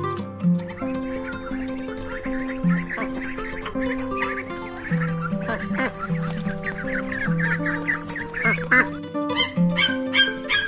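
Background music with steady held notes, over which ducklings call with many short peeps. Near the end, sharper and louder repeated sounds start.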